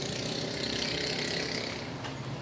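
Sheets of a paper sewing pattern rustling and crinkling as they are lifted and turned over a padded fabric surface.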